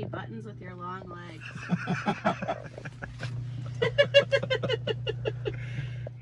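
People talking, with a short burst of laughter about four seconds in, over a steady low hum.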